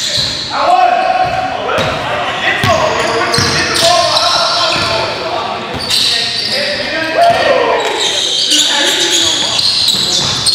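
Basketball game sounds in a gym hall: the ball bouncing on the hardwood floor and players' voices calling out on court.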